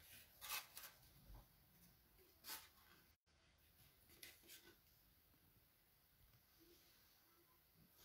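Near silence: room tone with a few faint, brief rustles, the clearest about half a second in and about two and a half seconds in.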